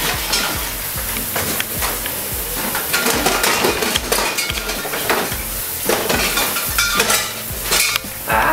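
Hurried clattering and rustling of toiletries, a comb and a towel being grabbed and knocked about at a bathroom sink: a steady run of knocks and clinks over a hiss.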